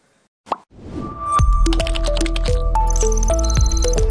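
TV channel closing jingle. After a brief silence and a short blip, a rising swell leads into electronic music with a deep sustained bass, stepping melodic notes and high tinkling tones.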